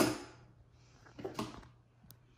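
Scissors snipping the frayed end off nylon rick rack trim: two short sharp cuts, one right at the start and one just over a second in.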